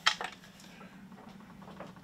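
A short sharp click right at the start, a smaller one just after, then a faint low steady hum under an otherwise quiet room.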